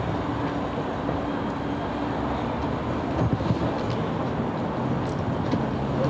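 Steady street traffic noise: an even rumble with a low, constant engine-like hum underneath and nothing standing out.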